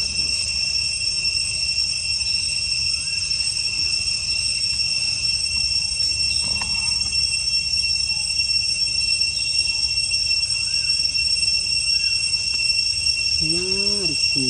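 Forest insects droning steadily at a high, unbroken pitch, over a low rumble, with a few faint short chirps.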